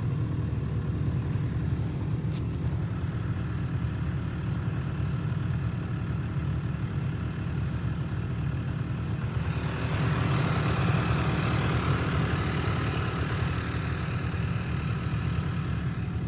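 Snowmobile engine idling steadily with a low, even rumble. A soft hiss swells over it for a few seconds past the middle.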